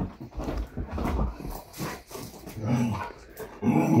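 A dog scrambling and jumping around on a fabric couch, with irregular soft thumps and rustling, then short low vocal sounds from the dog that rise in pitch near the end.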